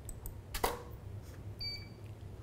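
A DSLR shutter click with the studio flash firing a little over half a second in, then a short, steady high beep near the end: the Profoto studio flash's ready signal once it has recycled.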